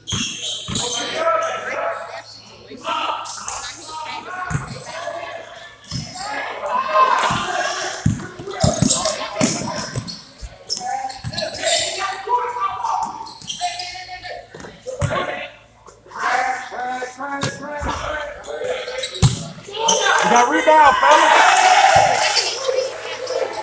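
A basketball bouncing on a hardwood gym floor in short knocks during play, mixed with the voices of players and spectators calling out. The sound echoes in a large gym, and the voices are loudest near the end.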